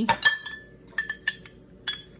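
A metal spoon clinking against the inside of a drinking glass as a drink is stirred. There are a handful of sharp clinks, each ringing briefly: a quick cluster at the start, then single clinks spaced out.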